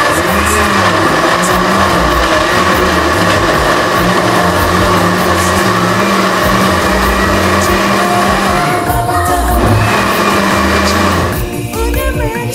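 Countertop blender motor running at speed, grinding a red stew base. It runs steadily, dips briefly about nine seconds in, then cuts off about half a second before the end.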